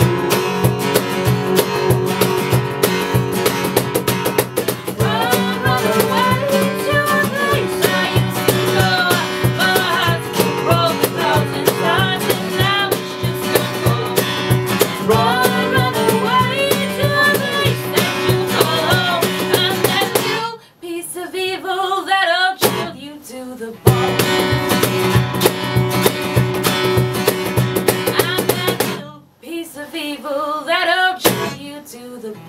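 Live guitar-and-voice song from an acoustic duo: steady strummed guitar chords with a singer coming in about five seconds in. About two-thirds of the way through the guitar drops out for a few seconds and the voice goes on alone, and it drops out briefly again near the end.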